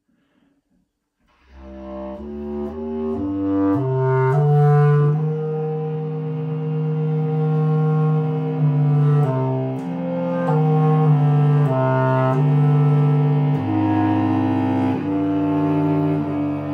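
Bass clarinet and bowed cello playing a slow contemporary duet. The instruments come in about a second and a half in with a line of notes stepping upward, then settle into long held notes that change pitch every second or two.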